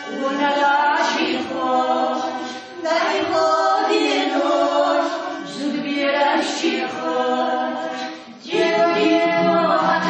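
Pankisi Gorge folk vocal ensemble singing together unaccompanied, in phrases broken by short pauses about three seconds and eight and a half seconds in.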